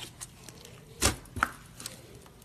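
Clear and white slime being pressed and stretched by hand, making short sharp clicks and pops, the loudest one about halfway through with a second close after it.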